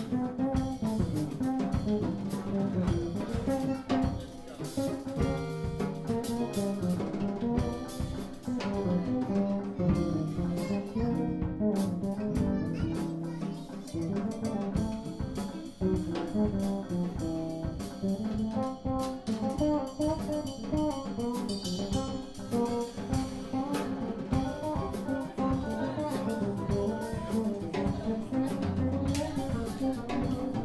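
Small jazz combo playing live: a saxophone carrying the melody over electric bass and a drum kit.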